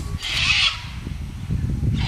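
A bird giving harsh, squawking calls twice, about two seconds apart, over a low rumble.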